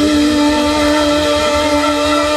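Live rock band holding one steady, sustained ringing note on amplified instruments, with a low bass rumble beneath.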